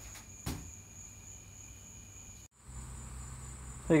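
Insects trilling: a steady, faint, high-pitched chirring. Near the middle it drops out for a moment and comes back at a higher pitch over a low rumble.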